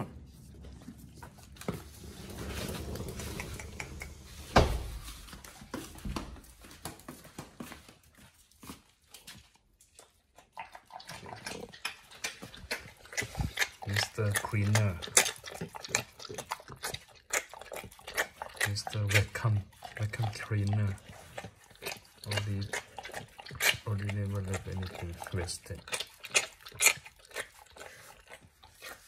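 A pit bull licking an empty stainless-steel tray clean: many quick wet laps and small clicks of tongue against metal, busiest in the second half.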